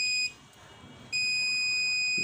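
Digital multimeter's continuity buzzer sounding one steady high tone. It cuts off about a quarter second in and sounds again about a second in as the probes touch the supply line: the line is dead shorted.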